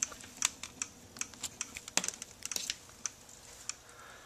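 Light, irregular clicking, several clicks a second, as the wiring and clips of a small electric motor rig are handled to switch it off. A faint steady hum runs underneath.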